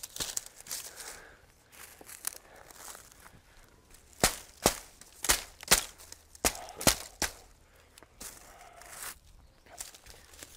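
Wooden mallet knocking on reed thatch, about seven sharp knocks over three seconds starting just before the midpoint, fixing a bundle of water reed into the roof.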